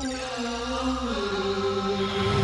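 Title-sequence music with a chanted vocal: long held notes that slide slowly between pitches, dropping lower about a second in, over steady sustained tones.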